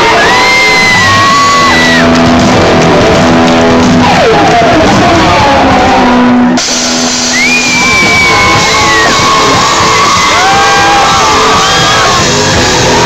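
Rock band playing live and loud on electric guitars and drums, with long held notes that slide up and down in pitch.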